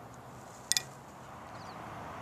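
Steady faint outdoor background hiss, broken a little under a second in by a single sharp double click.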